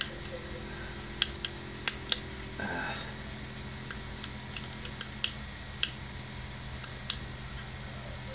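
Rotary encoder knob on a Prusa i3's LCD controller clicking as it is turned and pressed to scroll and select menu items: about a dozen sharp ticks at irregular intervals, several in close pairs, over a steady low hum.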